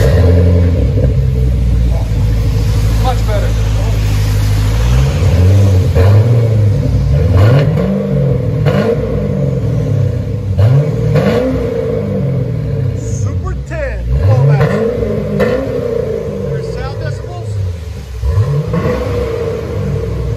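A 2006 Chevrolet Corvette's 6.0 L LS2 V8 through a true dual exhaust with an H-pipe and Flowmaster Super 10 mufflers, heard at the quad tips. The engine starts, idles steadily for about five seconds, then is revved in a series of throttle blips that rise and fall for the rest of the time.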